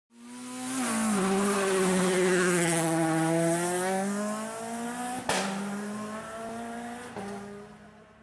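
Race-car sound effect under an animated logo: an engine note with tire squeal swells up, drops in pitch about a second in and holds. A sharp hit comes about five seconds in and a lighter one near the end, and the sound fades away.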